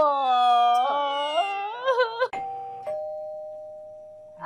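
A woman's drawn-out, mock-crying wail that trails off. A little over two seconds in, a doorbell chimes a two-note ding-dong, high then low, that rings on and fades.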